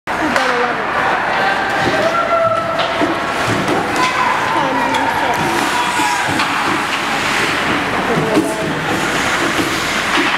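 Several voices calling and shouting over one another at an ice hockey game, with hockey skates scraping the ice and a few sharp clacks of sticks.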